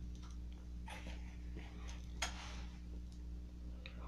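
Soft breathy puffs drawing on a tobacco pipe to bring a dying bowl back to life, with a puff about a second in and another just past two seconds, over a steady low hum.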